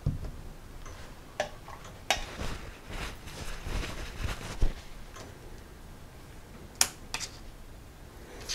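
A small pumpkin set down on a tabletop with a low thump, then scattered sharp clicks and soft knocks as paint supplies are handled.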